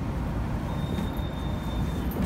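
Steady low rumble of a working bakery's background noise, with a faint thin high whine coming in a little under a second in.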